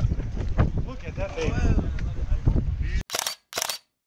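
Wind rumbling on the microphone with people talking in the background. About three seconds in, the sound drops out and two short bursts of hiss follow, with silence between them.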